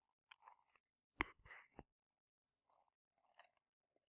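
Near silence, broken by a few faint clicks and small rustling noises, with one sharper click a little over a second in.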